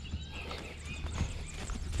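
Hoofbeats of a ridden mare moving across a grassy pasture, soft and muffled by the turf, over a steady low rumble.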